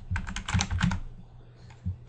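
Typing on a computer keyboard: a quick run of keystrokes in the first second, then a pause with one more keystroke near the end.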